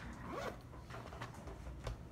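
Short rasping handling noise with a brief squeak about half a second in, then a few sharp clicks, as the microscope slide is moved and refocused.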